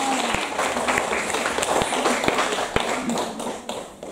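Audience applauding, with a voice or two calling out over the clapping; the applause dies away near the end.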